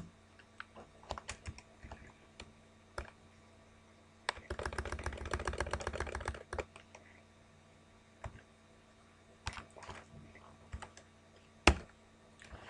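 Typing on a computer keyboard. Scattered key presses are followed, a little after four seconds in, by a fast run of keystrokes lasting about two seconds, then a few more taps and one louder key press near the end.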